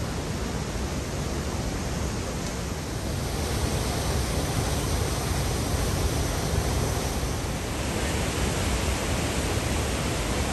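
Whitewater of the Great Falls of the Potomac: a steady, even rush of river water pouring over rocky falls and rapids, a little louder from about three and a half seconds in.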